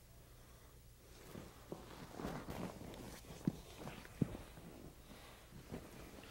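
Faint rustling and a few soft taps of two grapplers shifting their bodies, knees and bare feet on a foam mat as the arm bar is released and the hold is set up again. Almost silent at first, with two sharper taps near the middle.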